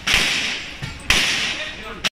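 Gunshots fired on a practical-shooting stage: two loud shots about a second apart, each ringing on in a long echo, with a fainter crack between them.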